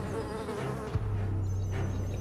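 Buzzing of a fly: a steady, low, droning hum with a short break about halfway through.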